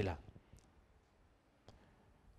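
A man's word trails off into a quiet pause with two faint clicks, about half a second and a second and a half in.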